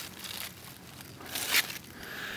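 Rustling of large melon leaves brushed by a hand and the camera, with a brief louder rustle about one and a half seconds in.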